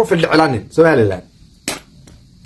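A man talking in short, clipped phrases, with a brief sharp click near the end.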